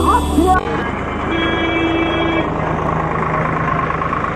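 Rap music cuts off about half a second in, giving way to motorcycles running on a dirt road, with wind rumbling on the microphone. A horn sounds for about a second, a little after the music stops.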